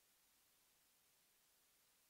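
Near silence: only faint, steady background hiss.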